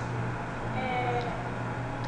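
A woman's voice holding one short drawn-out vocal sound about a second in, over a steady low hum.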